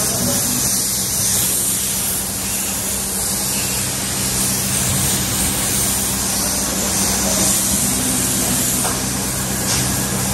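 Compressed-air paint spray gun hissing steadily as it sprays red paint onto a Brembo brake caliper, over a steady low hum.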